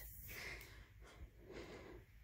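Near silence, with faint rustles and light taps of a paper strip being handled.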